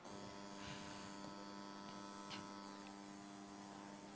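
Faint, steady electrical mains hum from the microphone and sound system, with two faint clicks, one near the start and one a little past the middle.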